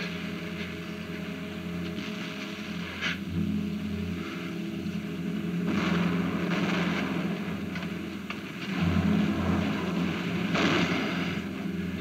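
A steady low mechanical rumble, as of engines running, with several swells of louder rushing noise.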